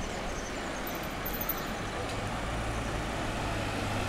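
Slow street traffic: car and van engines running at low speed close by, a steady low hum with road noise that grows slightly louder.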